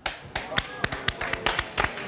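Applause: hands clapping in a quick, uneven run of sharp claps, with a voice faintly under it.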